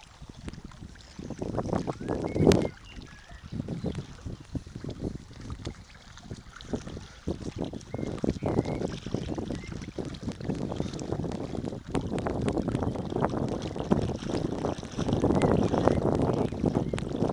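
Gusting wind buffeting the microphone over small waves lapping against the stones of a lakeshore, the noise swelling and dropping unevenly. A single sharp knock stands out about two and a half seconds in.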